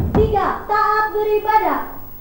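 A sharp thump, then a drawn-out chanted phrase on high, held notes that rises at the start and falls away at the end, more sung than spoken, lasting about a second and a half.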